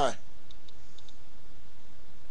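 A few faint, short clicks over a steady background hiss.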